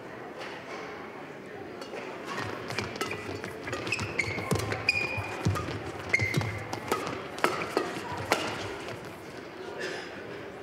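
Badminton doubles rally in a large hall: repeated sharp racket hits on the shuttlecock, short squeaks of shoes on the court floor and thudding footfalls, starting about two seconds in and dying down near the end.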